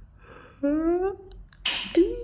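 A short rising "hmm?" from a person's voice, then, near the end, a short loud hissing burst as a pink toy gun goes off, its 'shot' signalling the grab for the pool noodle.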